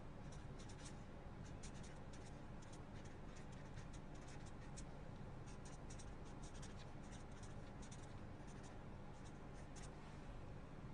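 Marker pen writing words on paper, heard as faint runs of short pen strokes with brief pauses between them. A steady low hum sits underneath.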